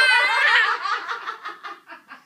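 A toddler's high-pitched voice holding a note, then breaking into a run of short, quick laughs that fade out.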